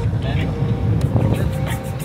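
Steady low rumble of a car driving slowly, heard from inside the cabin, with music playing over it.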